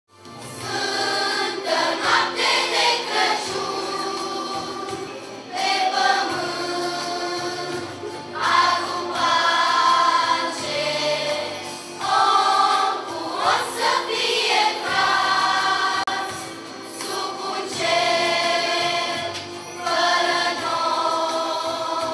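Children's choir singing a Romanian Christmas carol (colind) into microphones, in sung phrases a few seconds long with short breaths between them.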